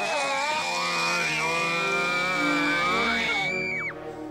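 A girl screaming: one long, high, steady scream that breaks off sharply near the end, over film music.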